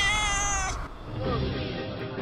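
One long, drawn-out meow, rising at the start and held until just under a second in. Then theme music starts.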